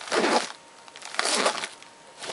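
Zipper on a nylon backpack hipbelt pocket being slid shut by hand: two short rasping strokes about a second apart.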